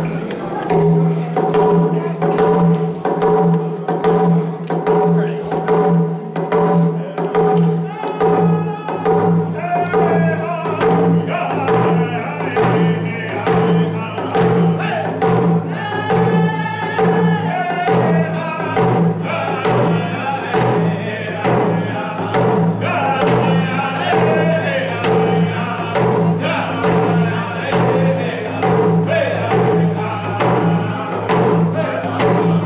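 Round dance song: a small group of men singing together while beating hand-held frame drums in a steady, even beat. The voices climb higher about halfway through.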